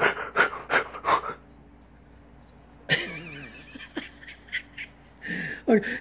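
A man's breathy laughter, a quick run of about five pulses a second, dies away about a second and a half in. A fainter wavering, higher-pitched voice-like sound follows about three seconds in.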